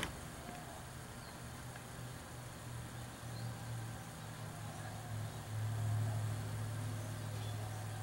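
A steady low hum over faint room noise, swelling a little about five and a half seconds in.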